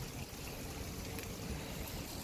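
Steady outdoor background noise: an even rushing hiss with faint low rumbling and no distinct event.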